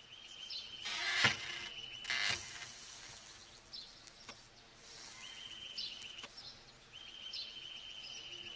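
Outdoor ambience with a high, rapidly pulsing chirping trill that comes in bursts of one to two seconds. Two short sharp sounds break in, the louder about a second in and another just after two seconds.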